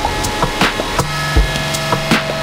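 Electronic jam on a small rig of pocket synths and a sampler (PO-33 KO, Korg Monotron Delay, Ellitone Multi Synth): a looping beat of clicky percussion hits, with a deep kick about every second and a half, over held synth tones. About a second in, a new low sustained note and a higher tone come in.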